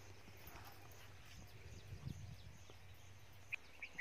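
Near silence: faint room tone with a low hum, and two small clicks near the end.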